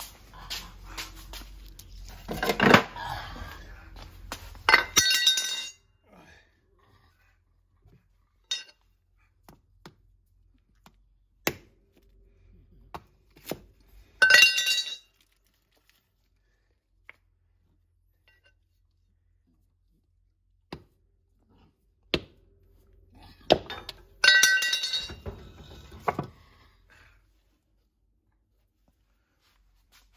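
An axe chopping frozen liver sausage on a wooden block: a run of sharp, well-spaced blows, several of them with a ringing metallic clang.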